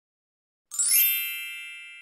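A single bright electronic ding, a chime sound effect, comes in about two-thirds of a second in. Its several high ringing tones fade slowly.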